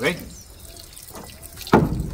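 Cattle slurping a wet cornmeal mash from a metal pan: soft wet sounds, then one louder slurp near the end.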